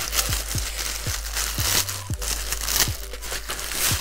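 Clear plastic bag crinkling and rustling as a swimsuit is pulled out of it, with background music and a soft low beat underneath.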